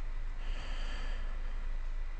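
Steady low background hiss and hum from the narrator's microphone, with a soft breath-like hiss about half a second in.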